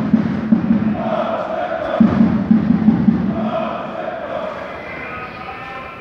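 A funeral march: a fast low drum roll alternating about once a second with held notes, then a higher melody line coming in near the end as the whole grows quieter.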